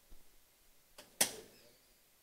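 Handling and movement noise as people settle into their seats at desk microphones: a few faint knocks, a click, then one short, loud rustle a little over a second in that quickly dies away.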